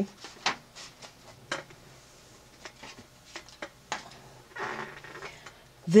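A silk screen being laid into a foil pan of water and handled: scattered light taps and clicks, then a brief swish near the end.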